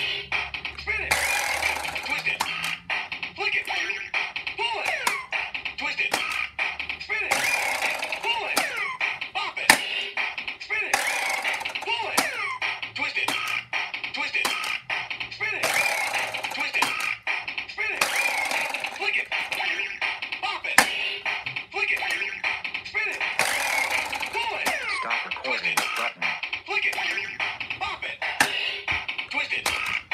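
A Bop It Extreme electronic toy plays its beat, and its recorded voice calls out commands such as "flick it", "pull it", "spin it" and "twist it", with a sound effect after each response. Frequent sharp clicks run through it, and brighter bursts of effects come every few seconds.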